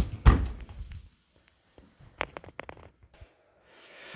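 A GE dishwasher being closed up: two heavy knocks right at the start as the rack and door shut, then a few lighter clicks about two seconds in.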